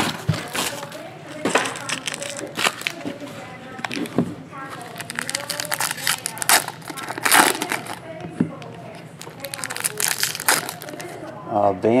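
Foil wrapper of a 2015/16 Upper Deck Ice hockey card pack crinkling and tearing as it is ripped open by hand. It comes as a string of sharp crackles, loudest in a few bursts.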